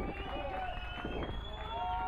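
Indistinct voices talking after the music has stopped, over a low steady rumble.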